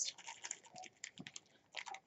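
Faint, scattered crinkles and clicks of a foil- and cellophane-wrapped package being handled.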